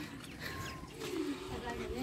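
Faint outdoor background with soft bird cooing and low, distant voices.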